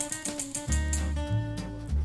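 Background music with strummed acoustic guitar and a steady bass line.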